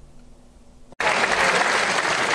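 A short quiet pause, then a chamber full of senators applauding, starting abruptly about a second in.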